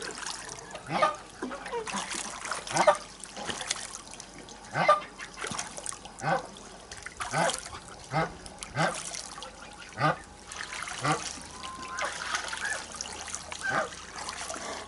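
Domestic geese calling in a series of short, sharply rising honks every second or so, over the steady trickle and light splashing of water as they swim and dabble in a small pond.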